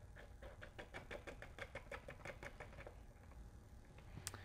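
Faint small metallic clicks, about six a second for roughly two and a half seconds, as a terminal nut is worked down onto a reversing solenoid's stud.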